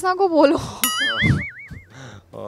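A cartoon 'boing' sound effect: a sudden twanging tone that wobbles up and down in pitch, about five swings a second, for about a second before fading out.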